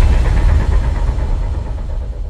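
Deep rumble of a cinematic intro sound effect: the tail of a boom, dying away slowly.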